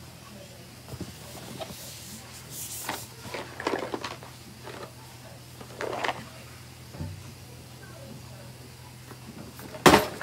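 Scattered handling and rustling noises and a few brief murmurs over a steady low hum, with a sharp knock just before the end.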